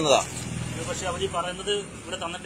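A motor vehicle's engine running with a low, steady rumble that fades out near the end.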